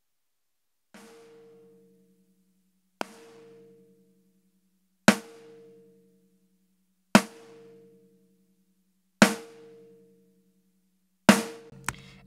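A snare drum sample hit six times, about every two seconds, each hit ringing out for about a second, played through a compressor whose attack time is being raised. The first hit comes through with its crack squashed; the later hits have a sharp, loud attack as more of the uncompressed transient passes through.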